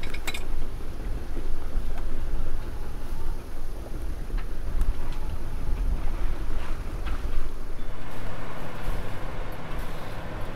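Steady wind rumble on the microphone aboard a sailing yacht under way, with the rush of water past the hull.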